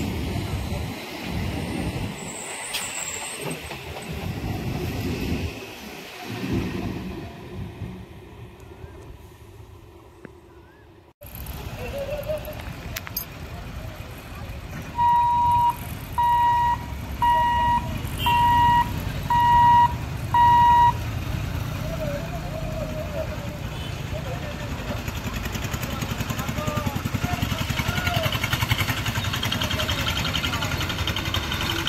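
Electric suburban local train running past close by, its low rumble pulsing and then fading away over about ten seconds. Then comes the traffic noise of vehicles waiting at a railway level crossing, with six short, evenly spaced beeps from a vehicle's horn in the middle.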